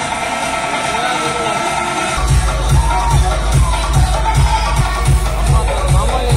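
Loud electronic dance music played through an outdoor DJ sound system of one bass bin and two top speakers. About two seconds in, a heavy bass kick drum comes in and beats steadily a little over twice a second.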